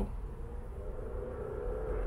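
Low steady background rumble with a faint steady hum running through it.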